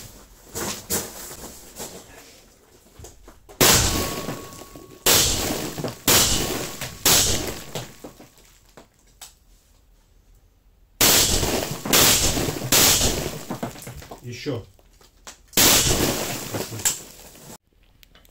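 5.45 mm AK-205 short-barrelled rifle firing 7N6 rounds through a BRT gas-relief muzzle can: a string of loud shots, each ringing on in the enclosed room. There is a pause of a few seconds midway between two groups of shots.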